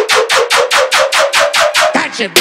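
Riddim dubstep track: a synth stab repeated rapidly, about eight times a second, creeping slightly upward in pitch with the bass dropped out.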